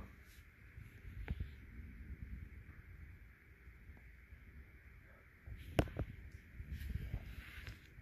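Faint handling noise of a sneaker and a handheld camera being moved about: soft rustling over a low hiss, with a small click about a second and a half in and a sharper click just before six seconds.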